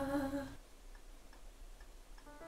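A woman's unaccompanied voice holding the last note of a lullaby, dying away about half a second in, followed by faint room tone.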